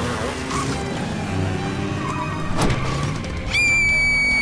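Film score music under chase sound effects, with a sharp hit about two and a half seconds in. Near the end, a loud, high, steady shrill tone comes in and holds.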